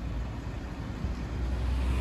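Mini Cooper convertible's engine running as the car rolls slowly forward at low speed.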